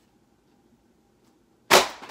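A stack of books set down hard, landing with a single sharp slap near the end, after a quiet stretch of room tone.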